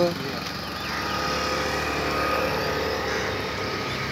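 A motorcycle engine running on the road, swelling gently and then easing off as it passes.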